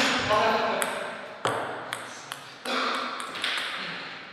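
Celluloid-type table tennis ball being struck by rubber-faced bats and bouncing on the table, a few sharp clicks that ring briefly, the loudest about a second and a half in and again near three seconds. A voice is heard briefly in the first second.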